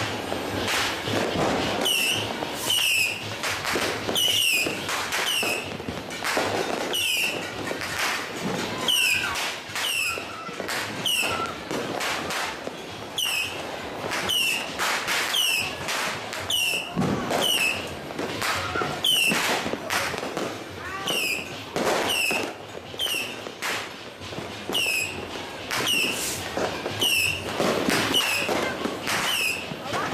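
Handheld fireworks and firecrackers going off in a dense run of sharp cracks and pops, with short high whistles recurring about once a second.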